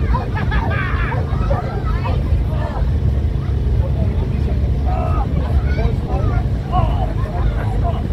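Crowd chatter: several voices talking at once, none clearly, over a steady low rumble.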